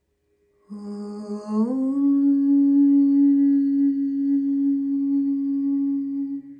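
A woman's voice chanting one long sustained note at the start of a closing Sanskrit mantra: it begins a little lower, glides up about a second in, then holds steady for about four seconds.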